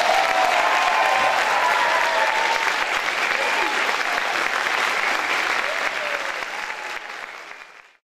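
Audience applauding, with some voices calling out from the crowd, fading out in the last second.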